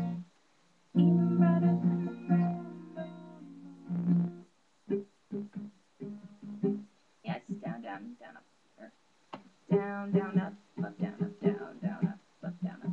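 Acoustic guitar with a capo on the second fret, strummed down and up to demonstrate a strumming pattern. First a few full chords ring out from about one second to four and a half seconds in, then shorter choppy strums follow.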